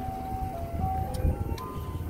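Ice cream truck chime music playing a simple melody of single held notes, over a steady low rumble.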